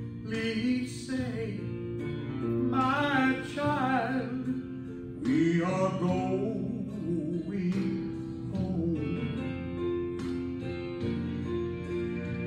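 A man singing a slow gospel song into a microphone with vibrato, over a steady instrumental backing.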